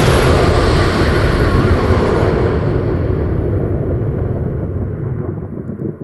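Explosion sound effect: a sudden loud blast that carries on as a long rumble, its hiss slowly dying away, then cuts off abruptly just after the end.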